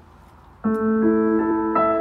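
Yamaha CLP685 digital piano played with its cathedral reverb setting and the reverb depth turned up high. A chord sounds a little over half a second in, followed by further notes and chords that ring on and overlap.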